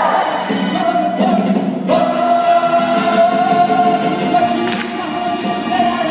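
A stage cast singing together over backing music, with a short break about a second in, then one long held note through most of the rest.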